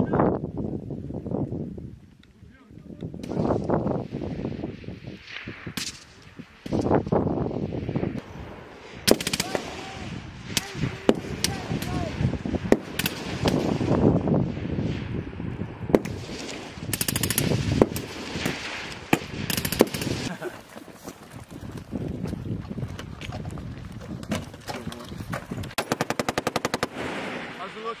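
Live-fire gunfire from a squad drill: scattered single shots and short strings of shots through the middle, then a rapid, evenly spaced machine-gun burst lasting about a second near the end.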